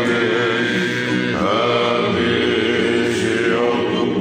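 Several men's voices singing a Tongan hiva kakala song together in long held notes, to strummed acoustic guitars and ukulele. The sung pitch shifts about a second and a half in and again near the end.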